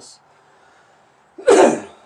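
A man's single loud cough about one and a half seconds in.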